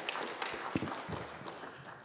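A few scattered light knocks and clicks over the low hum of the hall.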